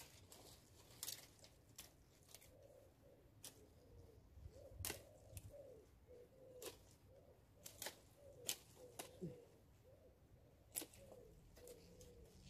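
Faint, sharp snips of pruning loppers cutting through branches, about a dozen irregular clicks, with a bird cooing softly in the background.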